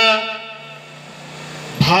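A man's voice speaking into a handheld microphone in a drawn-out, sing-song delivery; his phrase ends just after the start, a pause of about a second and a half follows, and the next word begins near the end.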